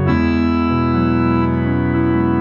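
Nord keyboard playing a multi-sampled instrument from its sample section: a chord struck and held, with the lower notes changing about two-thirds of a second in.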